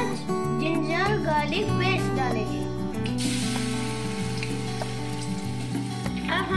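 Background music with a singing voice throughout. About three seconds in, hot oil in a steel kadai starts to sizzle as food is added, and it keeps sizzling steadily.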